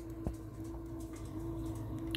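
Steady low-pitched hum from a kitchen appliance, with a single sharp click about a quarter second in as the phone is handled and turned toward the counter.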